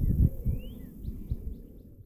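Wind buffeting the microphone in low gusts, with a bird call that rises and then drops about half a second in, followed by a quick run of short high chirps.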